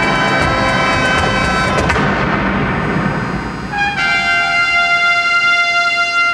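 Marching band playing: brass over drums, with a loud ensemble hit about two seconds in that rings away. From about four seconds in, the horns hold a long steady chord.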